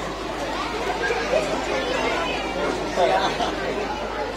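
Background chatter: several people talking at once, with no single voice standing out.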